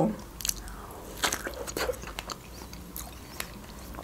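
A person biting into and chewing a fresh strawberry close to the microphone: a scattering of short, wet mouth clicks and crunches.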